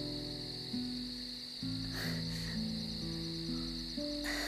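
Crickets chirping steadily in a night-time ambience, under soft background music of slow, held notes.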